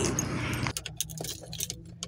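Steady outdoor noise that cuts off abruptly less than a second in, followed by light clicks and jingling of small objects being handled in a quiet car interior.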